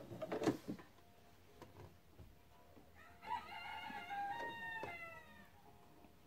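A rooster crowing once, heard faintly in the background: one call of about two seconds that falls in pitch at the end. A few short clicks come near the start, before it.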